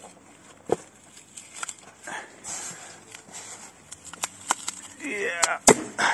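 Extruded polystyrene foam board (Penoplex) creaking and cracking as it is bent and pressed underfoot: scattered sharp cracks, with the loudest snap near the end as the board breaks. It breaks beside its foam-glued joint while the joint holds.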